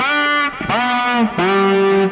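Electric guitar with a tremolo bar playing three single notes, each scooped: the bar is pressed down as the note is picked and released, so the note starts flat and slides up into pitch as a grace note.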